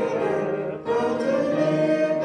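A church congregation singing a hymn together in sustained sung phrases, with a short break between phrases just before a second in.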